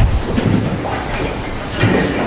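A roomful of people getting to their feet from wooden benches: a low rumble of shuffling feet, creaking seats and rustling clothing, with a thump right at the start.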